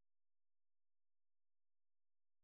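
Near silence: the audio track is effectively muted.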